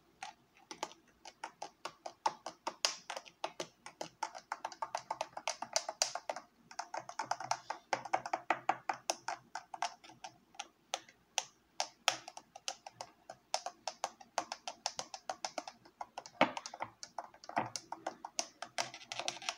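A spoon stirring a drink in a tall drinking glass, clinking quickly and repeatedly against the glass's sides. The clinks come thickest from about seven to ten seconds in.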